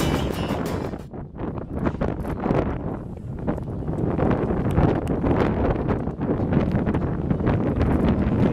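Wind rumbling on the camera microphone, a steady rough noise, with a guitar music track fading out in the first second.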